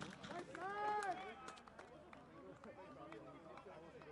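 Faint shouting and voices of rugby players on the pitch, with one man's drawn-out shout, rising then falling, about a second in, then only faint distant voices.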